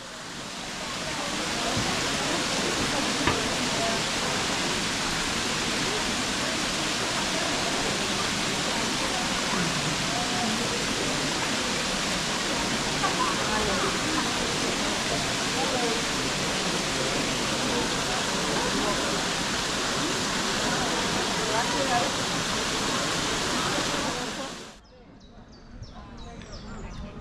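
Many dome-shaped water-bell fountains pouring into a shallow pool: a steady rushing splash that fades in at the start and cuts off suddenly near the end.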